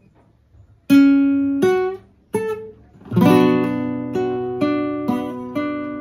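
Classical guitar played fingerstyle: after a short pause, three single plucked notes climb in pitch, then a chord is struck about three seconds in and further single notes are plucked over it while it rings.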